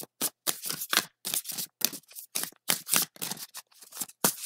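A tarot deck being shuffled by hand: a quick run of short papery card strokes, about three a second.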